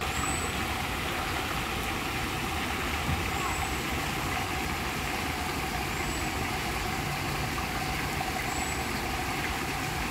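An ornamental fountain's water jets splashing steadily into its stone basin.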